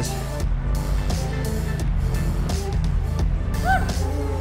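A steady low drone of mowing machinery, with music playing over it.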